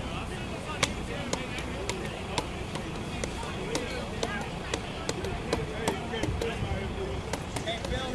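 Background voices talking faintly over steady outdoor noise, with scattered sharp clicks and knocks throughout.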